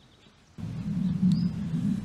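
Outdoor background noise: a low steady rumble that starts abruptly about half a second in, with one short high bird chirp near the middle.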